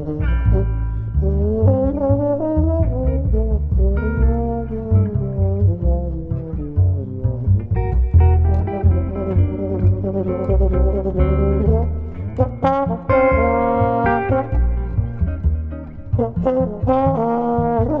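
Trombone played with a hand-held plunger mute, a sliding, bending melodic line, over low double bass notes.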